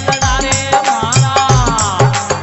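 Rajasthani devotional folk music (a bhajan): a melody line that bends and glides in pitch over a steady drum beat with sharp percussive clicks.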